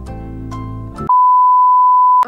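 Light plucked background music that cuts off about a second in. It is replaced by a loud, steady single-pitch TV test-pattern tone, the beep played with colour bars.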